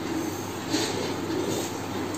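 Pen scratching across paper as a straight line is drawn along a plastic ruler, a rasping scrape that is loudest just under a second in.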